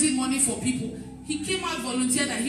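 A woman's voice speaking into a handheld microphone, amplified through the hall's PA speakers, in short phrases.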